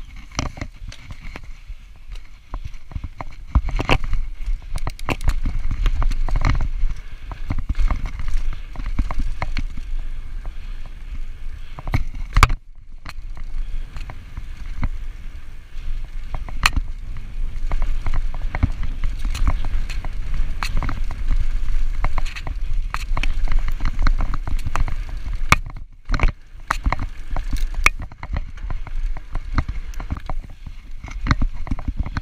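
Mountain bike ridden over a dirt singletrack: tyres on dry dirt, with the chain and frame rattling and clicking over bumps, under a heavy rumble of wind on the microphone. The noise drops away briefly twice.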